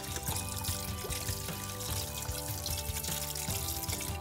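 White wine poured in a steady stream from a glass bottle into a pot of apple cider, splashing and trickling into the liquid, under background music.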